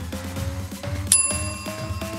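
A single bell-like ding about a second in from the workout interval timer, marking the end of the work interval. It rings on with several clear tones over electronic dance music that has a steady beat and a slowly rising tone.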